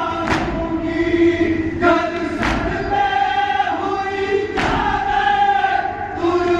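A group of men chanting a noha lament together in a steady sung line. Hard unison thuds of chest-beating (matam) come every couple of seconds.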